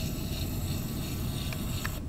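Small electric motor in a machine-tool demonstration unit running with a steady buzzing hum and a thin high whine, with two faint clicks near the end.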